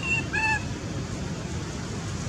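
Baby long-tailed macaque giving two short high-pitched calls in quick succession within the first half second, the second with a clear stack of overtones, over a steady background hiss.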